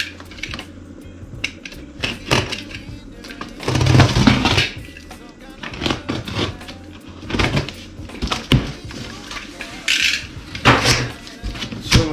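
Packing tape on a cardboard shipping box being cut with a knife and torn away, then the cardboard flaps pulled open, in loud noisy bursts about four seconds in and again near the end. Background music plays throughout.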